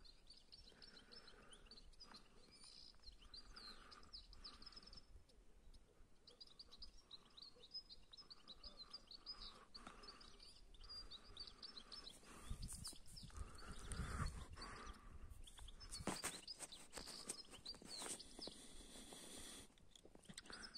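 Faint twittering of European goldfinches: runs of short, high chirps throughout. Low rumbles of wind on the microphone come partway through.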